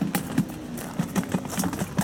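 Live perch flapping inside a plastic bucket: a quick, irregular run of knocks and taps.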